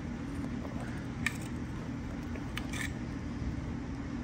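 A few faint metallic clicks as long-nose pliers work a part against an aluminium e-bike motor controller casing, over a steady low hum.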